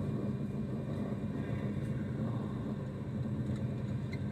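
Steady low hum of a badminton arena's ambience, crowd murmur and hall noise, with no clear shuttle strikes.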